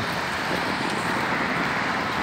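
Steady road traffic noise of cars driving past.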